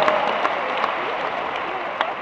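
Audience applauding, the clapping gradually dying down.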